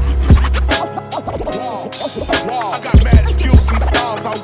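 Boom bap hip hop instrumental: a piano loop over a heavy kick-and-bass drum beat that comes in at the very start, with scratch-like pitch swoops laid over it.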